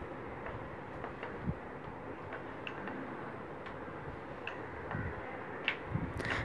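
Rolling pin flattening a small ball of wheat dough on a wooden board: faint, irregular light ticks as the pin knocks on the board, over a low steady hiss.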